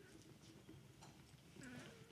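Near silence: quiet room tone with faint rustling of cloth and small handling noises.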